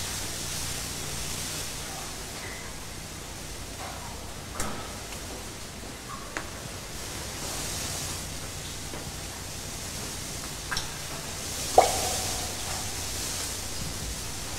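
Steady background hiss with a few faint, isolated clicks and one sharper tick near the end.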